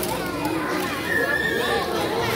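Many children's voices talking over one another in a room full of children.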